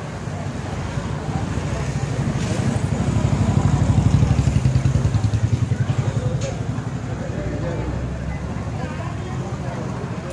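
A motorbike passing close, its engine rising to a peak about four seconds in and then fading, with people talking around it.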